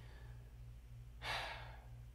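A man sighs once, a breathy exhale of about half a second, a little over a second in, over a faint steady low hum.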